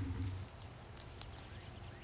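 Faint rustling with a few scattered small, crisp clicks from leafy greens being handled and picked.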